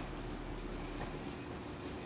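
Kawasaki ZRX1200 DAEG's inline-four engine idling through a BEET aftermarket exhaust: a steady low rumble.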